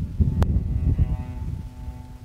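Wind buffeting the microphone, an uneven low rumble, with one sharp click about half a second in.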